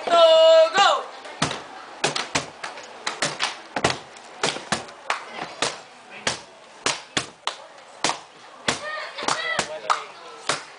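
A voice held briefly at the start, then hands drumming a beat on a wooden surface: sharp slaps and knocks, about two to three a second and a little uneven, with a short bit of voice near the end.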